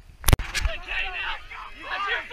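A sharp click, then overlapping shouts and cheers from spectators along a cross-country course.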